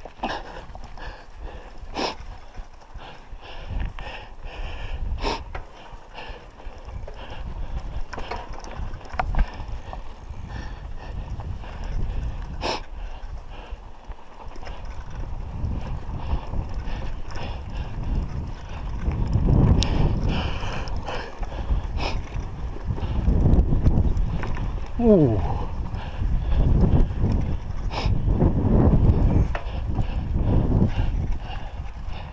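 Mountain bike ridden over a rough dirt track, heard from a handlebar-mounted action camera: wind rumbling on the microphone, growing louder in the second half as the bike picks up speed, with sharp knocks and rattles from the bike jolting over bumps.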